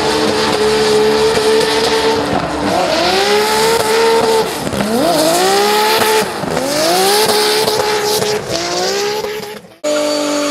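Turbocharged BMW M3 E46 drift car's engine held high in the revs with tyres squealing as it slides. After about two seconds the revs dip and climb again several times as the throttle is worked, then the sound falls away abruptly just before the end.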